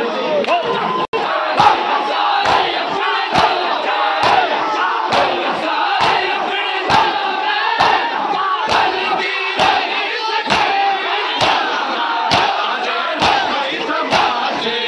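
A crowd of mourners slaps their chests in unison during matam, about two beats a second, with many men's voices shouting and chanting under the beats. The sound drops out for an instant about a second in.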